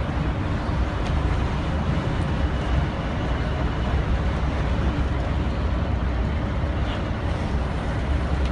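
Steady low rumble of engine and road noise heard from inside a moving bus cruising along a highway.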